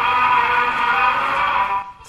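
Music played from a record on an acoustic horn gramophone, fading out near the end.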